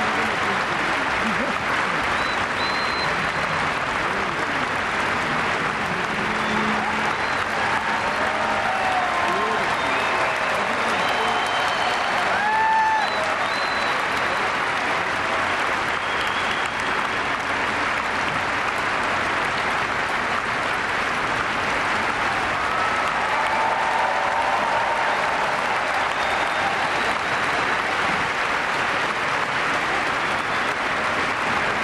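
A large stadium audience applauding steadily, with scattered voices calling out over the clapping.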